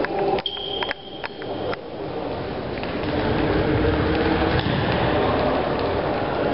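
Echoing sports-hall din during an indoor futsal game, with a few sharp knocks of the ball and players on the court in the first two seconds and a steady high tone lasting about a second and a half near the start.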